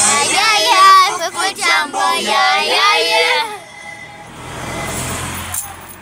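A high voice singing for about three and a half seconds. Then the singing stops, leaving the steady low hum of a moving car's cabin.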